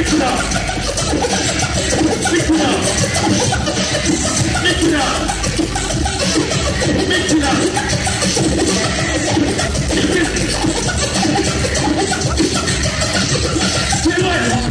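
Hip-hop DJ cutting and scratching records on turntables over a beat, in a live set.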